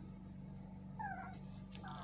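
A baby's brief, faint, high-pitched squeal about a second in, over a steady low hum.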